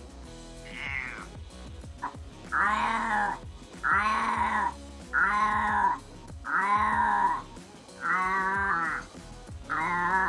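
Domestic cat meowing loudly over and over: one faint meow, then six long meows about a second and a half apart.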